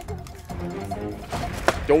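Two sharp knocks near the end as cardboard snack boxes are dropped, over steady background music.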